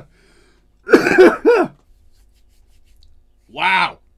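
A man laughing: three quick voiced pulses about a second in, then one short voiced burst near the end.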